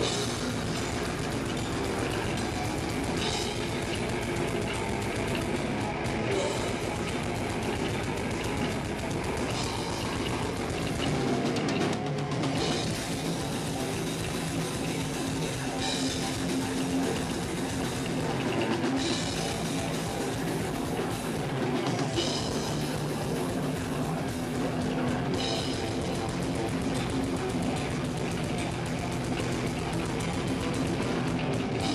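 Deathcore band playing live: drums on a Pearl kit with distorted guitar and bass, dense and loud throughout. The deepest bass drops out briefly a few times around the middle.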